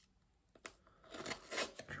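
A knife box being worked open by hand: a single sharp click about two-thirds of a second in, then rustling and scraping of the packaging.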